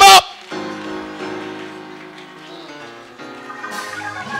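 Church organ holding sustained chords that slowly fade, moving to a new chord about three seconds in. A man's loud shout cuts off right at the start.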